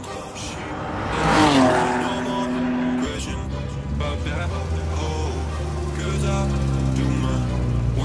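A race car passes at speed about a second in, its engine note dropping as it goes by. Then a car engine runs at low, steady revs, here a Honda Civic hatchback race car rolling through pit lane, with music playing underneath.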